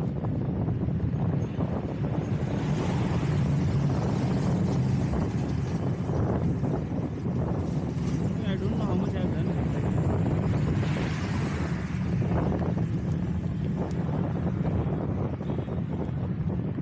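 Steady wind rush on the camera microphone of a moving road bike, with a low rumble from the bike's motion over the road.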